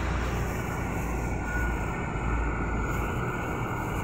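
Steady outdoor background noise with a low rumble and no distinct events; the rumble eases about three seconds in.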